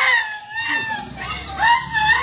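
A high voice in long, drawn-out, wordless tones: one held note that slides down, then two more that arch up and fall.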